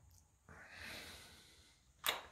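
Near silence in a small room, with one soft, faint breath about half a second in.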